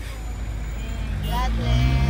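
Low, steady rumble of a car's idling engine heard from inside the cabin, with a short voice about a second and a half in and a louder low hum rising near the end.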